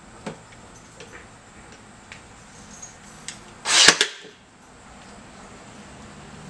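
Ryobi nail gun firing a nail into wood: one loud, sharp shot with a double crack about two-thirds in, after a few faint clicks from handling the tool against the workpiece.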